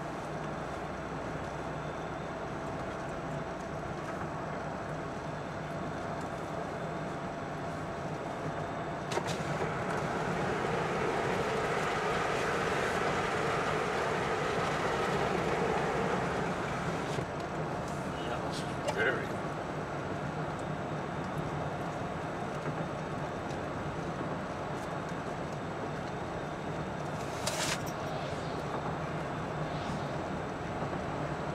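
Road and engine noise inside a car at highway speed: a steady tyre and engine hum that swells for several seconds in the middle, with a few brief clicks.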